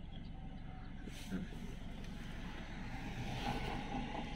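Steady low hum of a Toyota Innova heard from inside its cabin.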